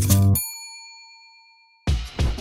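Background music cuts off and a single bright bell-like ding rings out, fading over about a second; music starts again near the end.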